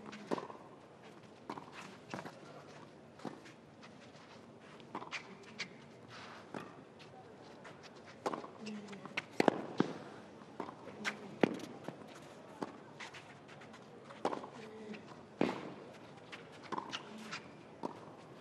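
Tennis rally on a clay court: sharp pops of racket strings hitting the ball about every one to one and a half seconds, with fainter ball bounces between. A player grunts on a few of the shots.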